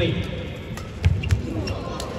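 Fast badminton doubles rally: sharp racket hits on the shuttlecock and squeaking court shoes, then heavy thuds on the court floor about a second in as a player lunges and goes down.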